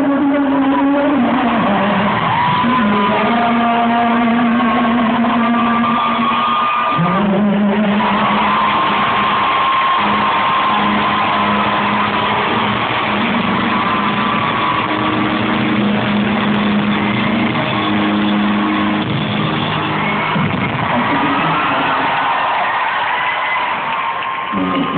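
Live band music with a male singer, recorded from the audience in a large indoor arena: long held notes over a steady accompaniment, sounding dull with no treble.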